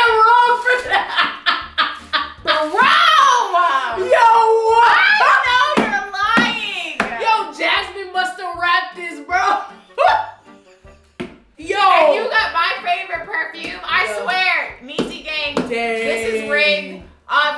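Voices laughing and talking over background music with a beat.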